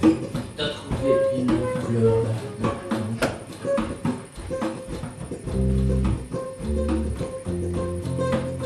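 Live improvised band music: plucked guitar notes and short percussive clicks, with deep bass notes in the second half.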